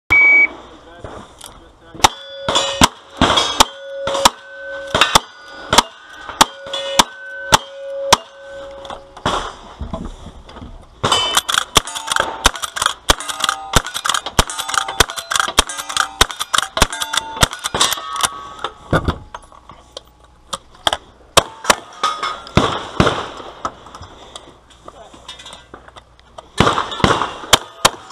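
A shot timer beeps, then a cowboy action shooting string of gunshots at steel targets. The first ten or so shots come steadily about 0.7 s apart, each hit leaving the steel plate ringing. A faster run of revolver fire follows, and a couple of loud shotgun blasts come near the end.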